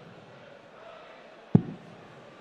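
A single sharp pop about one and a half seconds in, over a low arena crowd murmur. It is one of the stray popping sounds in the broadcast audio, which the commentators take for dart impacts picked up by the board microphone and played back on a delay.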